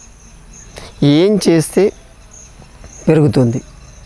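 A man speaking Telugu in two short phrases, about a second in and again about three seconds in, over faint, steady high-pitched chirping of insects.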